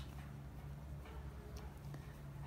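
Quiet room tone with a steady low hum and a couple of faint ticks.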